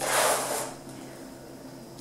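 Paper rustle as a glossy catalogue page is turned, loudest in the first half-second and then fading to quiet room tone.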